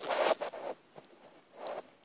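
Two short rustling noises about a second and a half apart, the first louder.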